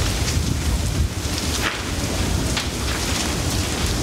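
A large building fire burning: a steady rushing noise of flames with a heavy low rumble and scattered crackles and pops.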